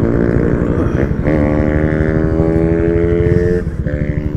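Motorcycle engine running, its note dipping, then holding a steady tone that climbs slightly for about two seconds. The note drops away near the end as the bike slows to pull over.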